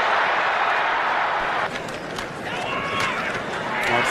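Stadium crowd cheering loudly during a long run, cut off abruptly a little under halfway through, followed by quieter crowd noise with a few faint shouts.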